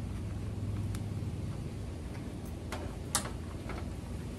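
A rubber-gloved hand wipes the casing of a Blu-ray player with a microfibre cloth, giving a soft rubbing sound and a few light clicks and taps, the sharpest about three seconds in. A steady low rumble runs underneath.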